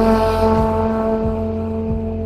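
Trombone holding one long note over a synthwave backing track, with a low drum beat about every two-thirds of a second underneath.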